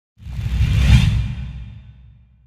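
Logo-sting whoosh sound effect with a deep rumble underneath. It swells in just after the start, peaks about a second in, and fades away.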